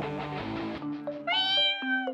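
A cat meows once, a drawn-out call falling slightly in pitch, starting about two-thirds of the way in, over background music.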